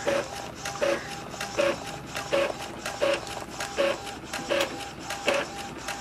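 Epson L3110 inkjet printer running through a copy: its mechanism whirs and clicks in a regular cycle, about once every three-quarters of a second.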